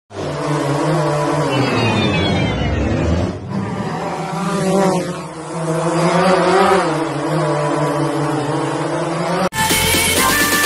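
Buzzing of a small quadcopter drone's motors and propellers, its pitch wavering up and down. About half a second before the end it cuts off suddenly and electronic music starts.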